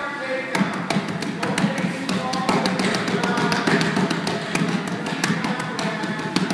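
Rapid, irregular slaps and taps of short close-range punches landing during a boxing drill against a partner pressing in with an exercise ball, starting about half a second in, over background music.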